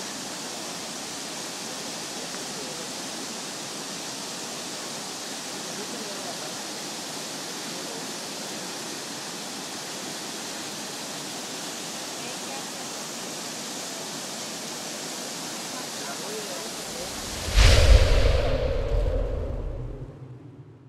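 Floodwater rushing steadily across a street in a torrent, a constant hiss. Near the end a sudden loud low boom with a held hum cuts in over the logo and fades away: a news-channel logo sound effect.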